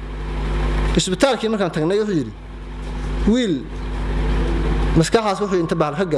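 A man speaking in short, spaced phrases into a microphone, over a steady low rumble and hum that swells up in each pause and drops back when he speaks.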